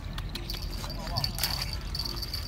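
Spinning fishing reel clicking irregularly while a hooked fish is played on a bent rod, with a thin steady high tone setting in about a quarter of the way in.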